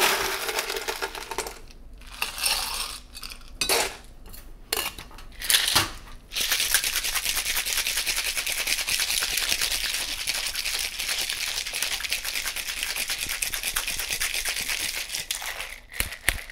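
Ice cubes clattering into a metal cocktail shaker in a few short bursts. About six seconds in comes a hard shake: ice rattling rapidly and steadily inside the sealed shaker for about nine seconds, then it stops just before the end.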